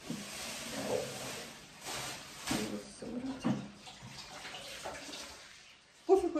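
Water running from a kitchen tap, with a couple of light knocks partway through; the flow stops shortly before the end.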